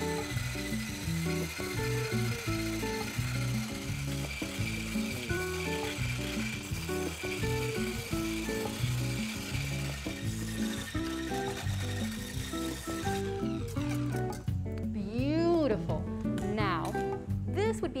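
Philips immersion blender running in a pot of mango curd, blending in cold butter to emulsify it; its high motor whine stops about thirteen seconds in. Background music plays throughout.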